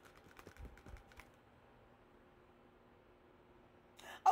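A cluster of faint, quick clicks and a few soft taps from hands handling a perfume bottle, lasting a little over a second, then near silence.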